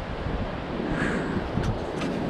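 Wind blowing on the microphone, a steady noise with no voice.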